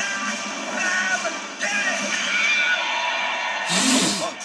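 Movie-trailer soundtrack heard through a TV speaker: music with voices over it, then a loud burst of noise just before the end, as the title card comes up.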